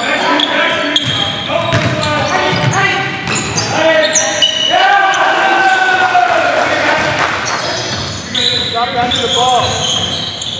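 Basketball game sound in a gym: a ball bouncing and dribbling on the court among players' voices and calls, with the echo of a large hall.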